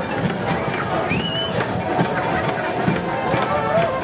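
Street parade music with a steady drumbeat, over the chatter of a crowd of onlookers.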